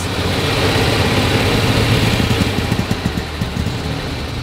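Classic Mercedes-Benz engine running unevenly, with an irregular beat in the second half. It runs rough after the car ran out of fuel, which the owners put down to sediment drawn up into the fuel system.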